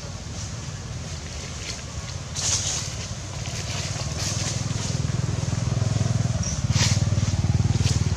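A low, pulsing engine rumble from a motor vehicle builds from about halfway and is loudest near the end. A few short dry crackles sound over it.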